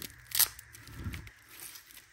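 Rhino Rescue combat application tourniquet strap being handled: rustling and light clicks, with one short, sharp noise about half a second in.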